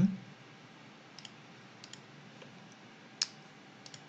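A few faint computer mouse clicks, with one sharper click about three seconds in, over a low steady background hiss.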